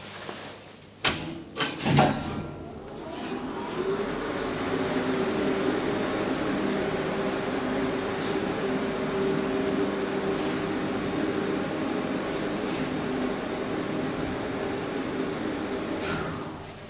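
Old Schlieren traction elevator: a few loud clunks of the door and its lock about a second or two in, then the hoist machine starts with a rising whine and runs with a steady hum as the car travels, dying away at the end as it stops at the floor.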